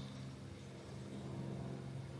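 Pause in an old lecture recording: a faint, steady low hum with a light hiss, the recording's background noise.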